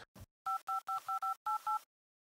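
Phone keypad dialling a number: seven quick touch-tone (DTMF) beeps, each two tones sounding together, one after another in about a second and a half.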